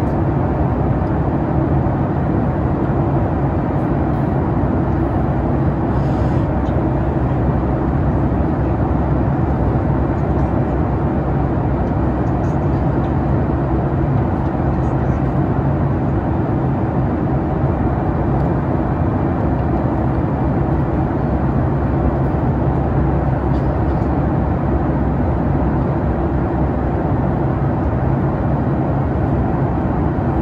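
Steady cabin noise of a Boeing 737 MAX 8 in flight: the constant hum of its CFM LEAP-1B engine and the rush of air past the fuselage, heard from a window seat beside the engine.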